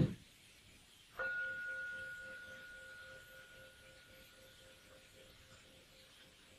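Meditation bell struck once about a second in, a clear two-tone ring that fades away slowly over the next few seconds.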